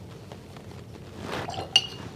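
A paintbrush working in a hard enamel palette tray gives soft scrapes, then one short ringing clink near the end.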